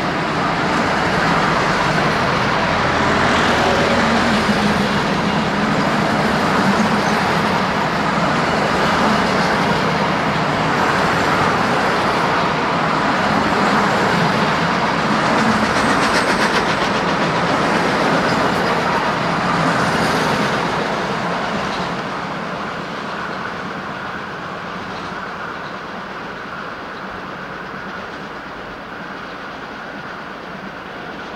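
Rolling-highway freight train, road lorries carried on low-floor wagons, passing close by: a continuous rumble and rattle of wagon wheels on the rails that fades away over the last third.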